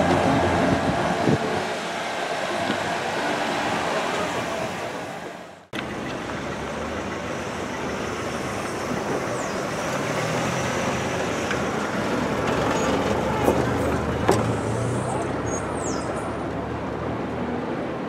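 Town street ambience: steady traffic noise with cars passing at low speed. The sound fades and breaks off abruptly about six seconds in, then resumes as a similar steady traffic hum.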